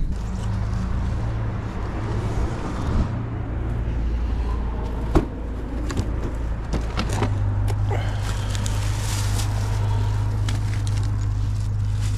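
A steady low rumble of car road noise, then wind on the camera microphone outdoors. A few sharp clicks and knocks come about halfway through as footsteps and handling while walking up to a door.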